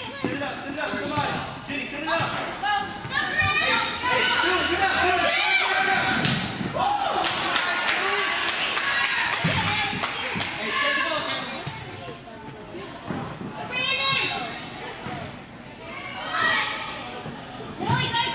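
Indistinct children's and spectators' voices and shouts echoing in an indoor soccer arena, with occasional thuds of the soccer ball being kicked.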